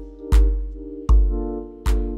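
Electric bass played in a straight, unswung groove over a backing track of sustained keyboard chords moving from E♭maj7 to Gm9, with sparse drum hits about three-quarters of a second apart.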